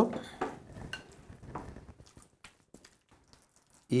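Soft scraping and squishing of a silicone spatula stirring mayonnaise-dressed tuna salad in a glass bowl. The sound fades after about two seconds, leaving near silence with a few faint ticks.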